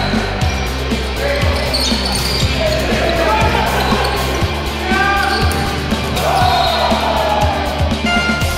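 Indoor volleyball rally: repeated sharp hits of the ball, with voices and music underneath.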